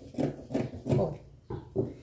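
Fabric and paper pattern pieces being handled: a string of about five short rustling and rubbing sounds.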